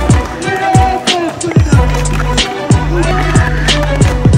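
Background music with a steady beat: deep bass kicks that drop in pitch, a held bassline and regular sharp snare-like hits.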